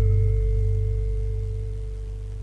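Gamelan gong ringing out after the final stroke of a Javanese tayub piece: a deep hum with a steady higher tone above it, slowly fading.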